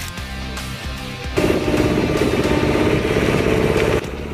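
Background music, and about a second and a half in a loud motor starts running with a fast, even rattle over it.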